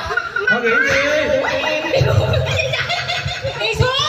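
A group of people laughing and chattering loudly together at close range, several voices overlapping.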